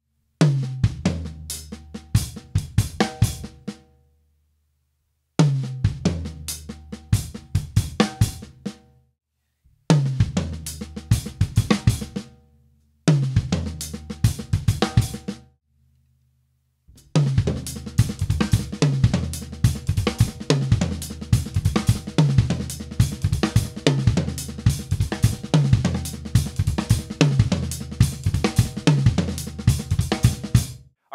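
Drum kit playing a one-bar 16th-note fill: rack tom, ghosted snare and kick, an accented floor tom, closed hi-hat and snare ghost notes, then a paradiddle on a stacker or ride bell with the kick doubling every right hand and an accented snare on four. It is heard as four short takes broken by silent gaps, then from about halfway through as a continuous loop of the fill repeated over and over.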